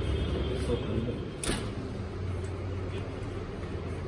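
A steady low rumble under faint, indistinct voice sounds, with one short sharp noise about a second and a half in.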